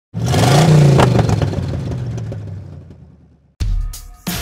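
Car engine revving up and falling away, loud at the start and fading over about three seconds. A low drum beat comes in right at the end.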